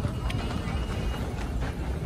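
Footsteps on a hard tiled floor and handling rumble from walking with a handheld phone through a busy subway station, with indistinct background voices and a faint steady high tone.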